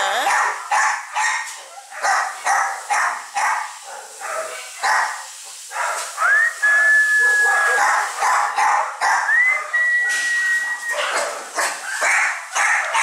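A litter of puppies yapping over and over in short, sharp barks, two or three a second. Two long, steady, high-pitched whines come through the middle of the yapping.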